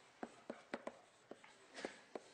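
Faint chalk writing on a blackboard: a run of short, irregular taps as the strokes are made, with a longer scrape near the end.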